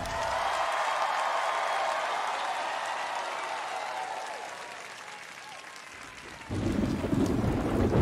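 Studio audience applause: an even clapping noise that fades away over about six seconds. About six and a half seconds in, the band's music starts up.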